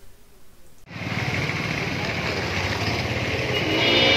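Street noise comes in abruptly about a second in: a motor vehicle engine is running close by, with a pulsing low rumble and a steady rush of traffic noise.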